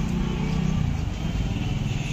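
Road traffic at a town square: a motor vehicle engine running, heard as a steady low rumble.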